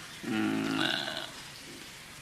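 A man's voice making one short, held, wordless vocal sound, about a second long.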